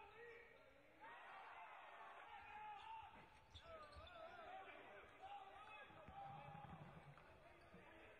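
Faint arena sound of a basketball game in play: a basketball bouncing on the hardwood court, with scattered voices in the background.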